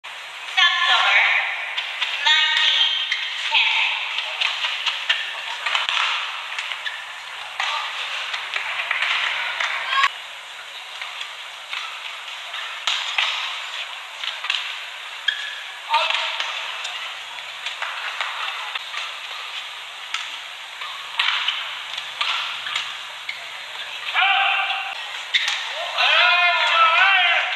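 Badminton rallies: sharp racket strikes on the shuttlecock and short squeaks of shoes on the court mat, over arena crowd noise and voices.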